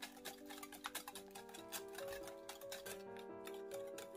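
Wire whisk beating eggs and sugar in a glass bowl, a quick run of irregular clicks and taps of wire on glass that stops about three seconds in, over background music.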